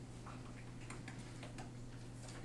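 Quiet room tone: a steady low hum with a few faint clicks.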